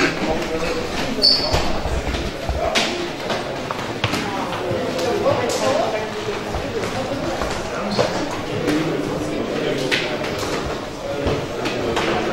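Indistinct voices murmuring in a large hall, with scattered sharp slaps and thuds as forearms strike forearms in a Wing Chun chi sao exchange.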